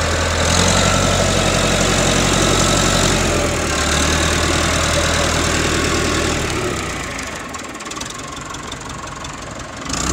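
Massey Ferguson 375 tractor's diesel engine running steadily with an even low rumble. About seven seconds in, the low rumble fades and the sound is quieter for the last few seconds.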